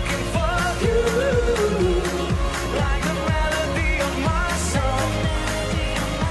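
Upbeat pop song with a male lead vocal over a steady kick-drum beat, about two beats a second.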